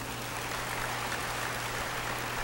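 A pause in the speech, filled by a steady hiss of background noise and a constant low electrical hum.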